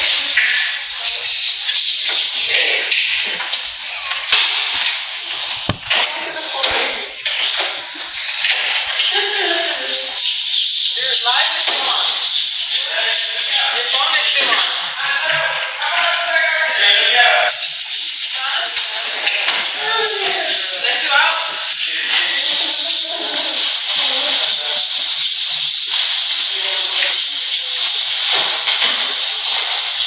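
Music and unclear voices over a constant loud hiss.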